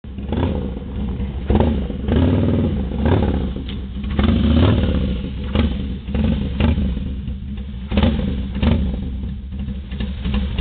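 Harley-Davidson V-twin motorcycle engine running, with the throttle blipped in quick revs about once a second.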